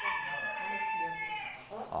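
A long, drawn-out animal call held at one pitch, dropping slightly and dying away near the end.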